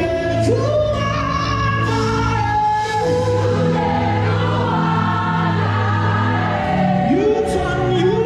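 Live gospel music: singing voices with a choir over a band, with long held low notes underneath. A couple of cymbal crashes come near the end.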